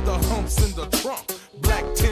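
G-funk hip hop track: deep bass and drums with a rapped vocal. The beat cuts out for a moment about a second and a half in, then comes back in with a hit.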